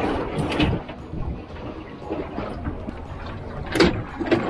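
Steady wind and water noise on an open boat at sea, with a few handling knocks and one sharp thump near the end.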